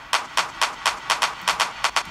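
Programmed snare drum roll with reverb, played back from the arrangement: the hits speed up from about two a second to several a second, a build-up into the break.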